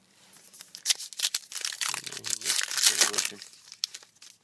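A plastic trading-card pack wrapper being torn open and crinkled by hand: a dense run of crackles that builds to its loudest about three seconds in, then fades.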